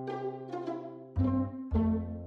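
Background music: a light tune of plucked notes that fade after each is struck, about one every half second, over a low bass line.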